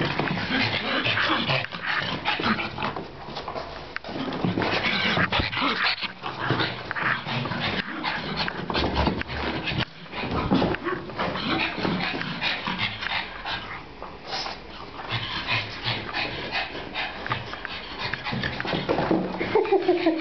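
A pug panting hard, a continuous run of noisy, rasping breaths with a few brief pauses.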